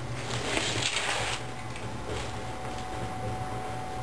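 Camera microphone rubbing against clothing: a burst of scuffing noise in the first second and a half. A faint steady tone comes in about a second in, over a low steady hum.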